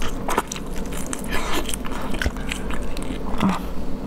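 Close-up eating sounds of a person biting and chewing a whole marinated prawn held at the mouth: a quick run of small wet clicks and crackles.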